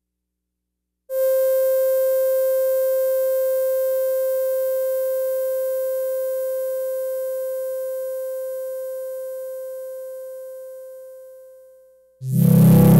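Yamaha CS-50 analog polyphonic synthesizer sounding a single held note, almost a pure tone, that starts about a second in and fades away slowly over about ten seconds.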